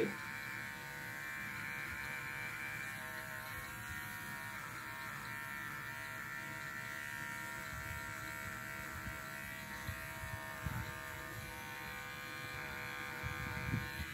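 Electric dog-grooming clipper running steadily with an even buzz as it clips the hair between a standard poodle's rosettes.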